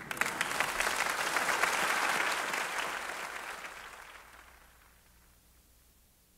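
Concert audience applauding on a live recording played back from reel-to-reel tape. The applause starts suddenly, swells for about two seconds and then fades out, gone by about five seconds in, leaving faint tape hiss.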